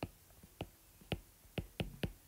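Stylus tip tapping and dragging on a tablet's glass screen while handwriting: a string of short, sharp taps, about six in two seconds, unevenly spaced.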